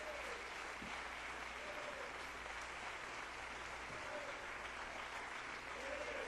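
Congregation applauding steadily, with a few faint voices calling out over it.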